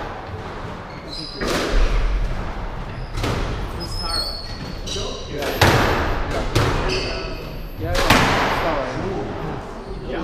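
A squash rally: the ball struck by rackets and hitting the court walls, about five loud cracks that echo in the enclosed court, with short high squeaks of shoes on the wooden floor between shots.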